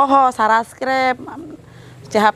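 A man's voice calling out a run of excited "oh, oh, oh" exclamations, four of them, the last drawn out longer, then a short lull near the end.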